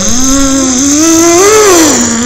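A voice holding one long, loud, unbroken note, its pitch wavering slowly upward to a peak about a second and a half in and then sliding back down. It is a vocal sound effect rather than words.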